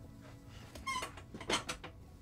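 A wooden chair squeaking and scraping as someone gets up from it, with a short high squeak about a second in and a quick cluster of scrapes and knocks half a second later.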